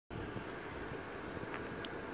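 Faint, steady background rumble and hiss with no distinct event, only a couple of tiny ticks.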